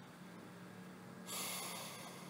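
A single audible breath taken close to the microphone about a second and a half in, over a faint steady hum.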